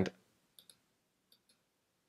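Two faint, quick computer mouse clicks about half a second in, as an option is picked from a dropdown menu.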